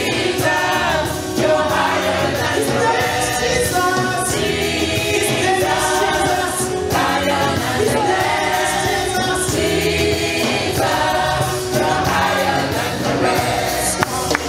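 Live gospel praise-and-worship singing: a female lead singer and a group of women backing singers on microphones, with the congregation singing along, over steady musical accompaniment.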